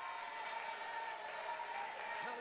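Faint room noise: a low steady hiss with a thin steady tone above it.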